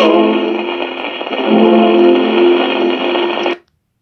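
Closing bars of a cueca sung with guitars, played from a worn 78 rpm shellac record with steady surface hiss. It ends on a long held note and cuts off suddenly about three and a half seconds in.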